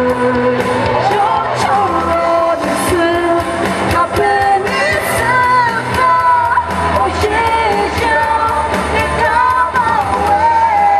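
A woman singing a rock song live into a microphone over amplified instrumental backing with a steady drum beat.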